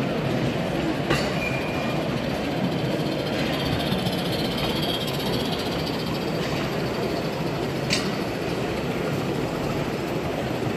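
Small live-steam garden-railway locomotive and its train on the layout: a steady hiss and rumble of the running train over the track, with two sharp clicks, about a second in and near eight seconds.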